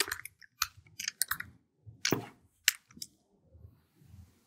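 A few separate computer keyboard keystrokes, sharp single clicks with pauses between, as a command is entered at the keyboard.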